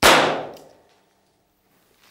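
A single revolver shot fired with a live round: one sharp report at the start, dying away in the room's reverberation within about a second.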